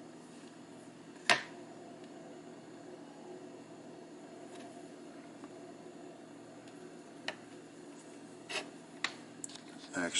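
Handling of a small metal IM Corona pipe lighter: one sharp click about a second in, then a few quieter clicks near the end, over a steady low room hum.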